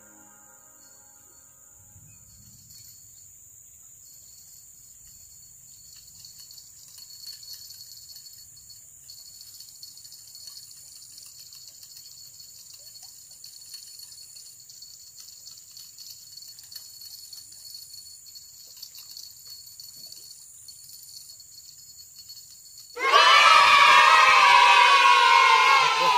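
Insects chirring in a steady high-pitched chorus, faint, under a low rumble of outdoor background. About twenty-three seconds in, a loud wavering vocal cry cuts in and lasts about three seconds.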